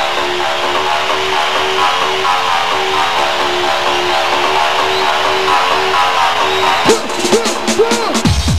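Live band music: a repeating riff of short guitar notes, with a run of quick falling electronic swoops coming in about a second before the end.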